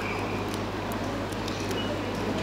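Steady low hum and background room noise, with a few faint small ticks.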